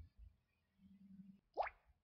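A short electronic 'bloop' that sweeps quickly upward in pitch about one and a half seconds in, like a phone notification tone. Faint low hum and a soft knock sit around it.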